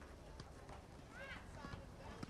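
Faint clicking footsteps of high-heeled shoes on pavement as a woman walks, with a faint voice in the background.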